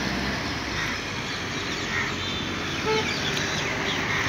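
Steady outdoor background hiss with a few faint, brief bird calls now and then.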